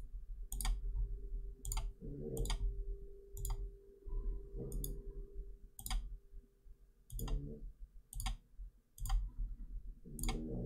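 Computer mouse buttons clicking at an irregular pace, roughly once a second, over a low steady hum.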